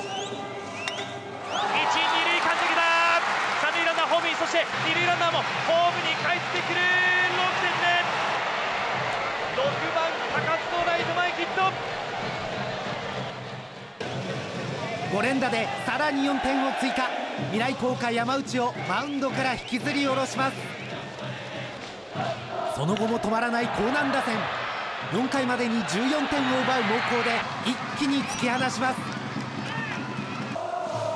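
Narration over the noise of a baseball crowd cheering in the stands.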